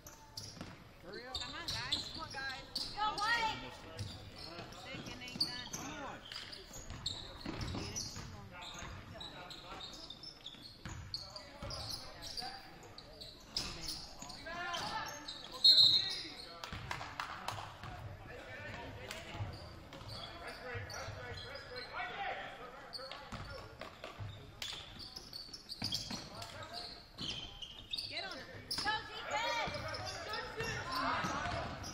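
Basketball game sounds in a gym: a ball bouncing on the hardwood floor and voices from players and spectators, echoing in the hall. About halfway through there is one short, sharp whistle blast, the loudest sound in the stretch, typical of a referee's whistle.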